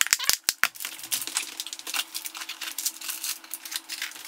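Plastic food containers being handled on a wooden counter while a snap-lock lid is clicked shut: a quick run of sharp clicks in the first second, then lighter clicking and rattling.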